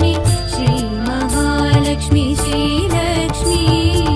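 Tamil devotional music for the goddess Lakshmi: a melodic line that bends in pitch over steady bass and percussion, playing continuously.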